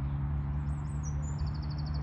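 Small birds singing: high chirps starting a little under a second in, then a rapid trill near the end, over a steady low hum.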